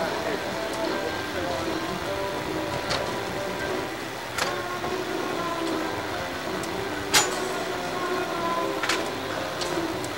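Indistinct background voices with faint music, broken by a few sharp clicks, the loudest about seven seconds in.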